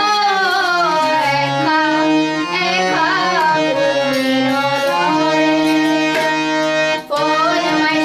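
A woman singing a Chittagonian folk song of longing into a microphone, her wavering melody held over steady sustained instrumental notes with tabla accompaniment. The sound briefly drops out about seven seconds in.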